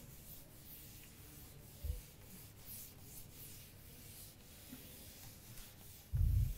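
Faint, irregular scratching of writing during a pause in speech, with one soft low thud about two seconds in.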